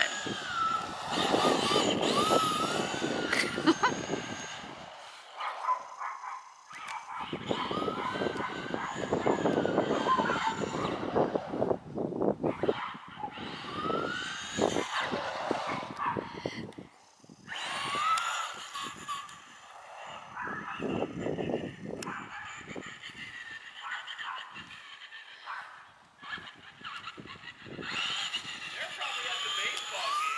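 Traxxas Slash and Rustler RC trucks driving on a paved street, their motors whining up and down in pitch over tyre noise, in bursts with short lulls.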